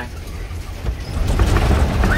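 Open-sided safari truck driving, a steady low rumble that grows louder a little past halfway.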